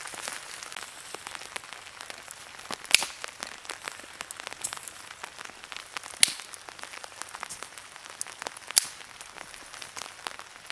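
A small wood campfire crackling, with three sharp, loud pops about three, six and nine seconds in, over a light patter of rain.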